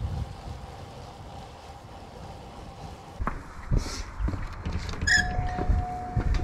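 Low wind and road rumble, then a few knocks and a short squeak, and about five seconds in a shop-door entry chime starts: one steady electronic tone.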